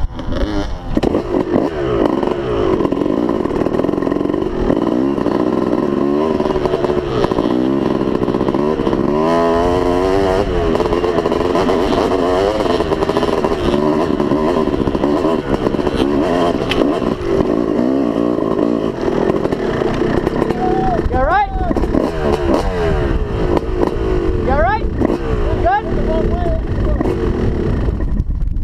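Dirt bike engine heard from the rider's helmet, revving up and down continuously while it climbs a rocky hill trail. Near the end the revs sweep sharply upward a few times.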